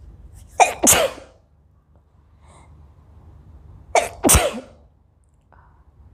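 A woman sneezing twice, about three seconds apart, each sneeze coming in two quick bursts; the sneezes are set off by black pepper in her nose.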